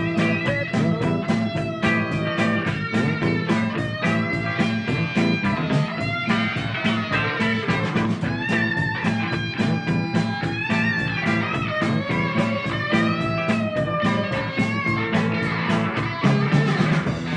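Rock band playing an instrumental passage: electric guitar with bending, gliding notes over bass guitar and a steady beat.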